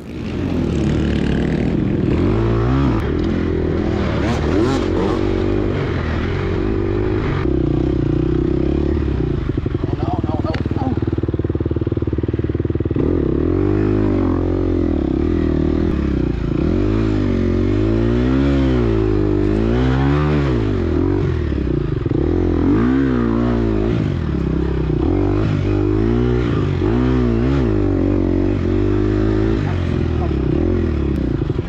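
Gas Gas EX250F four-stroke single-cylinder dirt bike engine under race load, its pitch rising and falling over and over as the rider works the throttle and gears.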